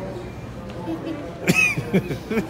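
Laughter, with a loud short burst about one and a half seconds in.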